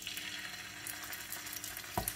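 Raw chicken drumsticks frying in hot vegetable oil in a non-stick pan, a faint steady sizzle with light crackling as the pieces are laid in, and a brief knock near the end.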